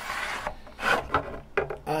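A yardstick scraping and rubbing across a wooden sign board as it is freed from its bent arch, with a louder scrape about a second in and a couple of light knocks after it.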